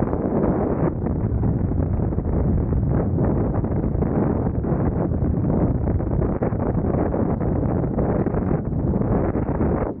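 Freefall wind rushing over a helmet-mounted 360 camera's microphone: a loud, steady rush of wind noise.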